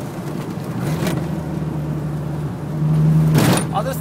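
Toyota MR2 AW11's four-cylinder engine heard from inside the cabin, holding a steady note while cruising and growing a little louder near the end. A brief thump about three and a half seconds in.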